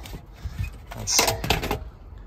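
Hard plastic car interior trim, a radio mounting bracket, being handled, giving a few short clicks and rattles about a second in.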